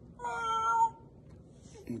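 A man voicing his exhale as a short, high, steady cat-like meow lasting under a second.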